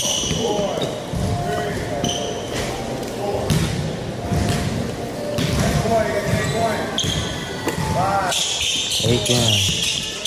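A basketball being dribbled repeatedly on a hardwood court, with sneakers squeaking in short chirps on the floor as the players cut and change direction.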